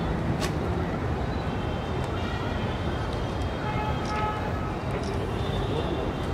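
Steady low rumbling background noise at an even level, with faint voices and a few light clicks.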